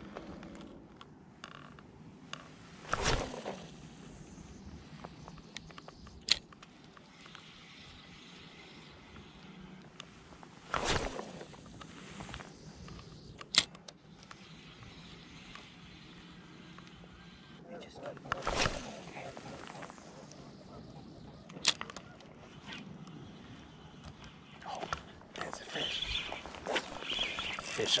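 Light spinning rod and reel being cast and worked: three swishes of the cast, about seven to eight seconds apart, each followed a few seconds later by a sharp click as the bail closes, with faint reel cranking in between. Near the end comes a busier run of reel cranking and handling as a small striped bass is hooked.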